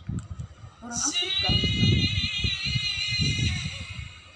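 A high-pitched voice holds one long, slightly wavering note, starting about a second in and lasting about two and a half seconds, over low, muffled voices.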